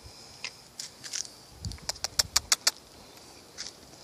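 Crisp plastic crackling from a bag of dried apple chips being handled as the last chip is taken out: a few scattered crackles, then a quick run of about six about two seconds in, over dull handling thumps.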